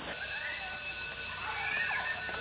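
Electric school bell ringing continuously, a steady high-pitched ring that starts abruptly just after the start.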